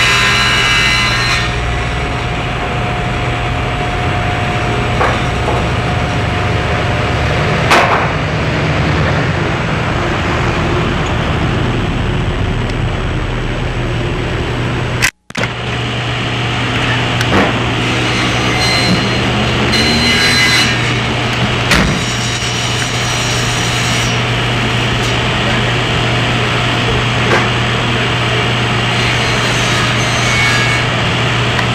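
Rough, hissy audio track of an old Sony skip-field videotape playing back, over a steady low hum, with a few clicks. The sound cuts out completely for a moment about halfway through, where the tape's picture breaks up.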